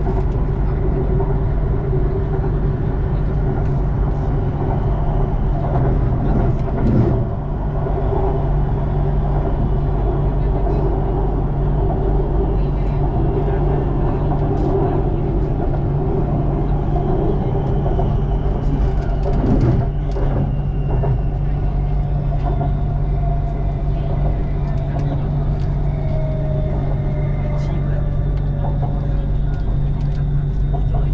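Bangkok BTS Skytrain car running along its elevated track, heard from inside the car: a steady rumble and hum, with two brief jolts about seven and nineteen seconds in. Near the end a faint whine glides slowly lower.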